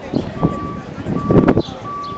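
A vehicle's backup alarm beeping, one steady tone repeating about one and a half times a second, starting under half a second in. A cluster of loud knocks midway is the loudest sound.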